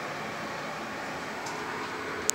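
Steady room noise: an even rushing hiss with a faint hum underneath.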